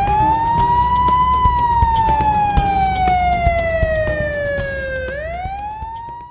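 Police siren wailing in one long cycle: the pitch rises, then slowly falls for several seconds. Near the end it climbs again and cuts off. A low rumble and scattered ticks run beneath it.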